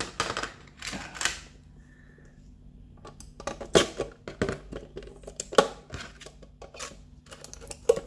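Clear plastic display case being handled and prised open by hand: a short scratchy rasp about a second in, then scattered sharp clicks and taps of hard plastic.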